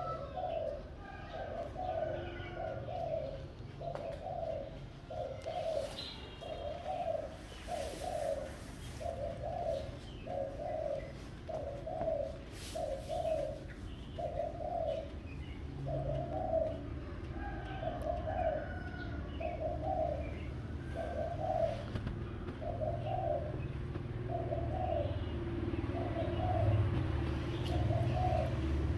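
A dove cooing over and over in a steady rhythm, a little more than one low note a second, with a few faint chirps from other small birds and a low rumble underneath.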